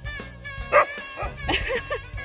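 Akita barking twice, the first bark about three-quarters of a second in being the loudest, with short yelps between, over background music.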